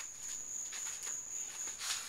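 Faint handling and movement noises, a few soft rustles and light knocks, over a steady high-pitched whine.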